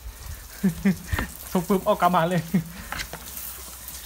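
Hands rubbing and kneading a seasoning paste into a whole raw chicken in a bowl, a wet, crackly squishing with a few sharp clicks, under a man's voice talking.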